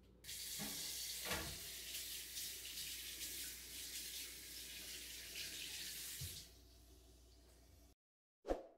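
Water running, like a tap into a sink, coming on suddenly and stopping about six and a half seconds in, with a few low knocks, the loudest about a second in.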